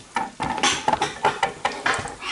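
A metal fork clinking and scraping against a drinking glass in a run of irregular taps, stirring a thick mixture of egg yolk and grated Grana Padano.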